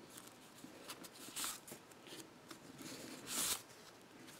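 Cardstock pages and paper tags of a handmade mini album being handled and turned, with small taps and two short papery swishes: one about a second and a half in, and a louder one near the end.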